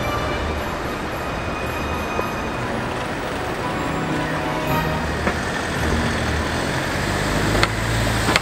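City street traffic: a steady rumble of passing cars' engines and tyres, with a car going by near the end and a couple of sharp clicks.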